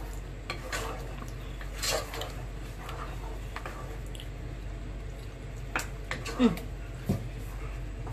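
Wooden spoon stirring thick gravy in a steel pot, with scattered scrapes and light knocks against the pot, over a steady low hum.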